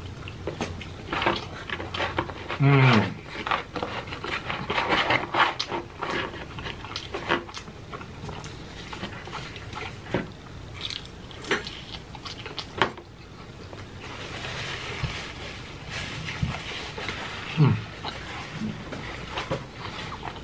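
Close-miked chewing of cheese pizza: wet smacking, lip and tongue clicks and swallowing. There are two brief hums, one about three seconds in and one near the end.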